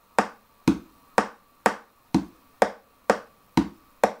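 Metronome clicking a steady beat, about two clicks a second.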